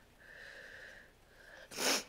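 A woman breathing faintly into a lectern microphone, then a loud, sharp breath in near the end.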